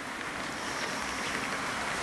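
Steady background hiss with a low rumble underneath, with no speech.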